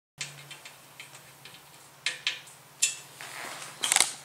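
A string of light, sharp clicks and taps at irregular spacing, with the sharpest ones about two and three seconds in and just before the end. This fits handling noise as the frame parts and hardware are moved about. A faint steady low hum runs underneath.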